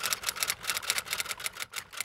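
A fast, even run of sharp clicks, about eight a second, like typewriter keys being struck: a typing sound effect over a title card.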